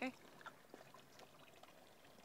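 Near silence with a few faint scattered ticks, after a voice trails off at the very start.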